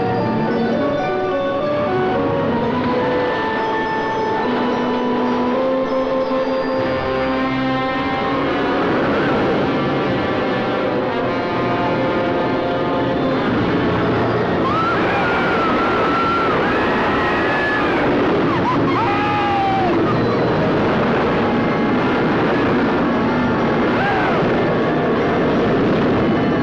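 Dramatic orchestral film score. From about eight seconds in, the steady rumbling rush of a wooden roller coaster running joins it, and wavering high wails rise over it around the middle.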